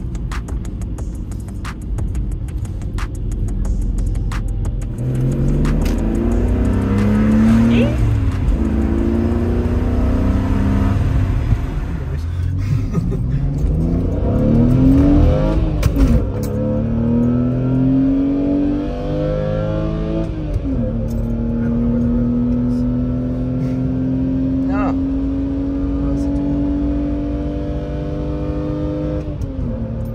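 BMW E83 X3's engine accelerating through the gears of its manual gearbox, heard from inside the cabin. After a few seconds of road noise, the engine note climbs in pitch and drops sharply at each upshift, four times. It then makes one long, slow climb in a higher gear before the next shift at the end.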